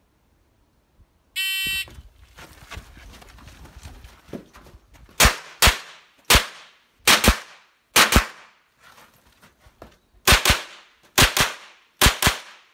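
An electronic shot-timer start beep sounds once, then about four seconds later rapid .22 rimfire rifle shots ring out, about eleven in all, mostly fired in quick pairs.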